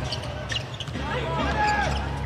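A basketball being dribbled on a hardwood court during live play, with a faint voice calling out in the arena from about a second in.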